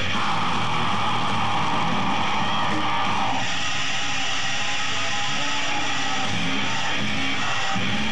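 Death metal band playing live, distorted electric guitars to the fore, recorded as a dense, loud wall of sound. A harsh sustained layer sits on top and drops away about three seconds in.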